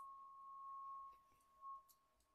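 A faint, steady single ringing tone that fades a little past halfway and swells briefly near the end.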